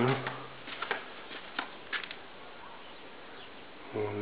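A man's voice trailing off in a held, even hesitation sound, followed by a few faint short clicks over a low steady hiss.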